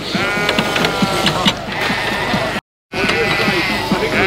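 Sheep bleating in the handling race: one long, drawn-out bleat, then another after the sound cuts out briefly about two-thirds of the way through, with a few light knocks in between.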